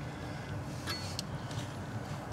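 Low steady background noise with two faint, light clicks about a second in.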